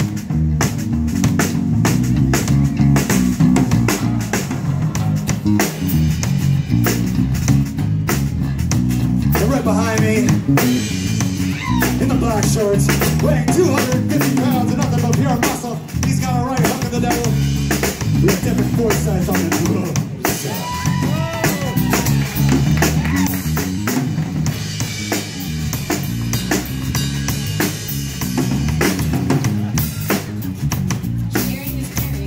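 Live band playing an instrumental groove on drum kit, electric bass and guitars, with a melodic lead line weaving over it from about nine seconds in.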